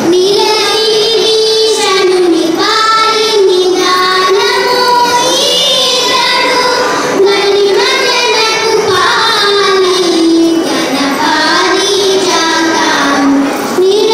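Young girls singing a Carnatic song together, one melodic line of held notes that bend and slide up and down in ornamented glides.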